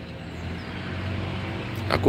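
Low rumble of a passing road vehicle, growing gradually louder.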